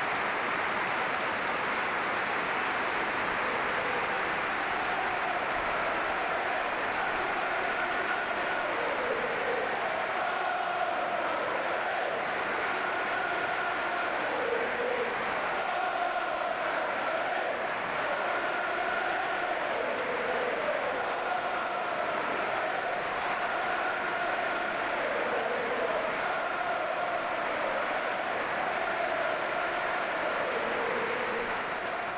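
Football stadium crowd applauding steadily. From about eight seconds in, the crowd also sings a chant in repeated phrases over the clapping.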